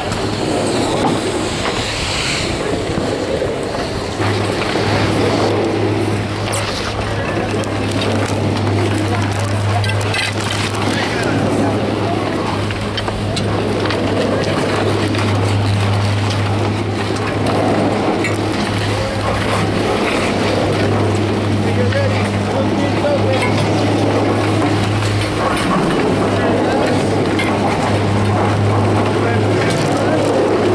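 Low, steady hum of a high-speed detachable chairlift's terminal machinery, louder after about four seconds, under background voices of people in the lift line.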